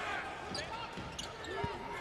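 Basketball arena game sound: a steady crowd murmur with a few short squeaks and ball bounces on the hardwood court.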